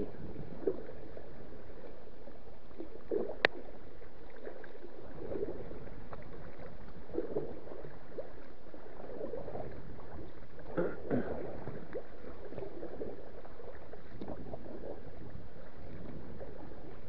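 Kayak paddle strokes in lake water, a soft splash and drip roughly every two seconds over a steady wash of wind and water. A single sharp knock comes about three and a half seconds in.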